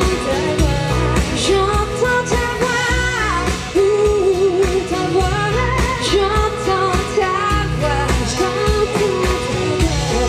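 Live pop-rock band: a woman singing lead over strummed acoustic guitar, electric guitar, bass and drums.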